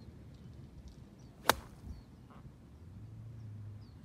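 A golf iron striking a ball off turf: one sharp click about one and a half seconds in.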